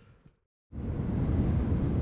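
Edit cut to a moment of total silence, then from under a second in a steady low rumbling background noise with no distinct events.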